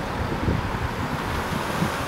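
Road traffic: cars passing along a town road, a steady rush of tyres and engines, with some wind on the microphone.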